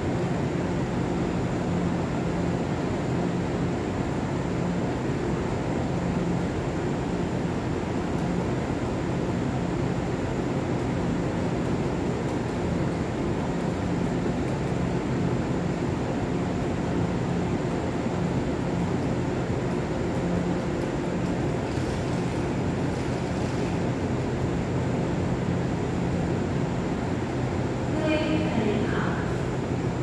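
Steady hum of a railway station platform, carrying the running equipment of an electric train standing at the platform. Voices start near the end.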